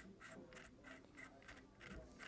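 Faint run of small metallic ticks and scrapes, about five a second, as the threaded front section of a SilencerCo Omega 36M suppressor is unscrewed by hand.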